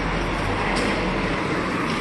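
Steady street noise heard while walking: a continuous rumble with a few light ticks about once a second.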